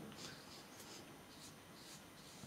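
Faint soft swishes of a fine watercolour brush stroking wet paint onto paper, a few short strokes in a row.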